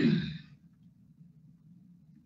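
A man's audible breath out close to the microphone, lasting about half a second. It is followed by a faint, steady low hum.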